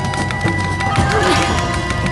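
Music soundtrack with a steady beat and held tones, with a short wavering cry that rises and falls about a second in.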